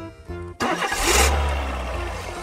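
A thunderclap: a sudden loud crack about half a second in, followed by a deep rumble that slowly fades, over light background music.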